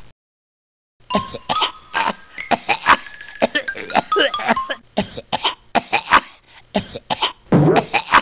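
A man coughing in a fit of repeated coughs, as if choking on food, with music playing underneath; it starts about a second in after a brief silence.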